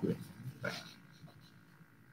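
A man's speaking voice trailing off at the end of a word, with a faint short vocal sound a little over half a second in, then a pause of quiet room tone.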